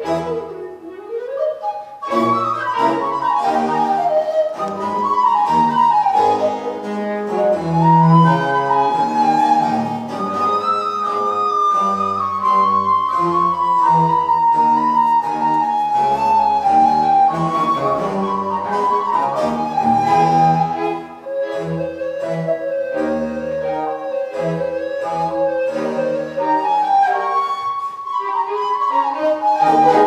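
Live baroque music: a recorder plays a running melody over a string orchestra of violins, cello and double bass, after a short lull in the first couple of seconds and with a brief dip in level about two-thirds of the way through.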